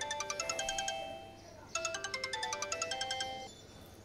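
Smartphone ringtone: a short melody of quick, bright notes that plays twice, with a brief pause about one and a half seconds in.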